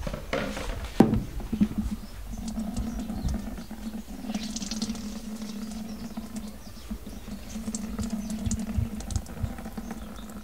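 Water dripping and pattering from a hand-squeezed cloth bag of harvested spirulina into a plastic bucket, as small scattered ticks over a steady low hum that sets in about two seconds in. A single sharp click sounds about a second in.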